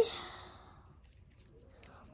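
A boy's drawn-out word trails off into a soft breathy exhale that fades within about half a second, followed by near silence with only faint room tone.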